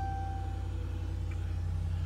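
Pickup truck engine idling, a steady low rumble heard inside the cab, with a single dashboard chime tone fading out over the first second.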